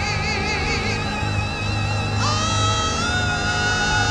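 Live gospel music from a church band behind an altar call: a wavering melody with strong vibrato over sustained low bass, then a long held note coming in a little after two seconds in.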